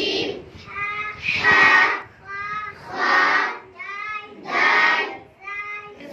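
A young girl chants the letters of the alphabet (huroof-e-tahajji) in a sing-song voice, and each letter is answered by a class of children repeating it together, louder. The call and the chorus reply alternate about every second and a half, giving about four exchanges.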